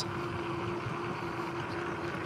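Ecotric Rocket fat-tire electric bike riding along a sandy dirt track: a steady rush of wind and tyre noise with one faint, constant tone running through it.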